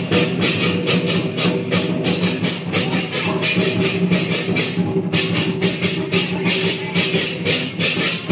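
Lion dance percussion: drum and cymbals striking a fast, even beat of about four to five strikes a second, over a steady low ringing, with a brief break about five seconds in.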